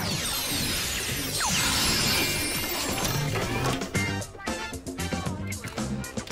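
Dance music with a steady bass line, played through the DJ setup, with a swishing sweep over the first couple of seconds and sharp beats after it.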